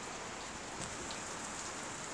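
Steady hiss of background noise in a voice-over recording, with a faint tick or two.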